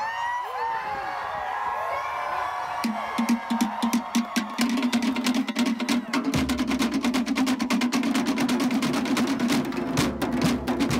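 Tahitian drumming: a fast, even run of wooden slit-drum strokes begins about three seconds in, and a deep bass drum joins a few seconds later. Before the drums start, crowd voices whoop and call.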